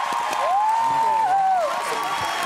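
Studio audience applauding and cheering, with one drawn-out cheer that rises and then falls in pitch a little after the start.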